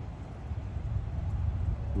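Distant double-stack container freight train passing, heard as a steady low rumble.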